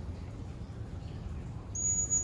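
A trainer's whistle blown once, a short high steady tone near the end, the bridge signal marking the polar bear's paw presentation as done right; a steady low background rumble runs underneath.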